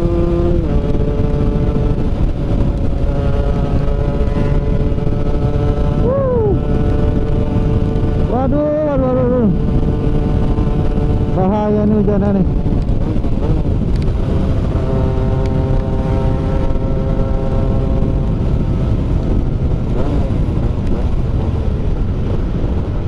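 Yamaha F1ZR's 110 cc two-stroke single-cylinder engine running at steady high revs while cruising at speed, with heavy wind rush on the microphone.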